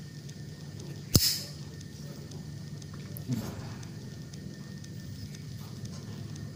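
A single sharp plastic click about a second in, as the GoPro Hero 6's side door over the battery and microSD slot is snapped shut, then softer handling noise of the camera in the hands a little after three seconds, over a faint steady low hum.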